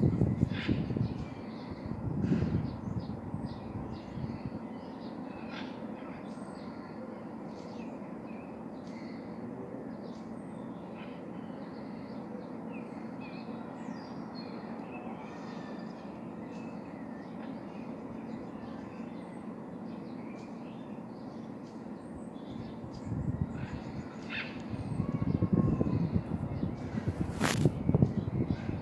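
Outdoor ambience with scattered short bird chirps and calls throughout, over a steady background hiss. A low rumble comes and goes in the first few seconds and again over the last five, and a single sharp click sounds just before the end.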